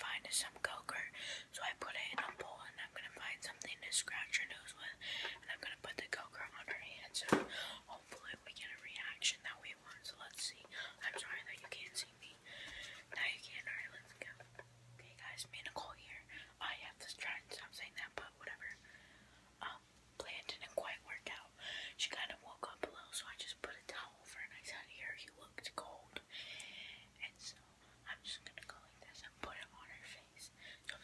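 A young woman whispering close to the microphone, breathy speech that comes and goes in short phrases, with a few small handling clicks.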